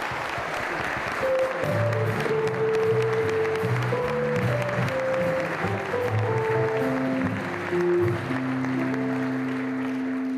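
Audience applauding while a live band plays a slow tune of long held notes that comes in about a second in. The clapping thins out as the music goes on.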